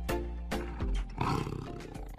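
A big cat roaring, loudest about a second in, over background music with regular percussion hits.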